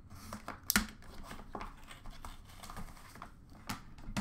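A cardboard trading-card box being opened and its packaging handled: scattered clicks and light rustling, with a sharp snap about three-quarters of a second in and another near the end.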